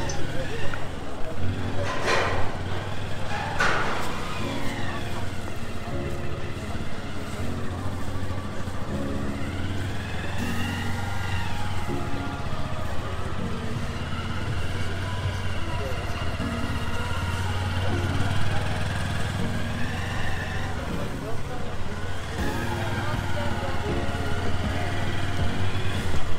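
A motorcycle engine running steadily close by in busy street traffic, with slow rises and falls in pitch and passers-by talking. Two sharp clicks come a couple of seconds in.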